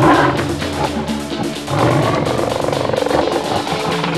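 Intro music with a big cat's growl sound effect laid over it, loudest at the start.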